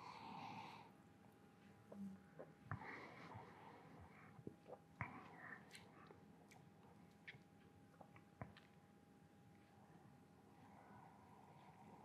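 Quiet sounds of a man drinking stout from a glass. There is a sip at the start, then a breath out, small mouth and swallowing clicks, and another sip near the end.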